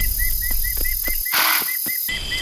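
Night-time bush ambience: a small animal's chirp repeated steadily about five times a second over a high insect hiss, with a brief rustling burst about a second and a half in.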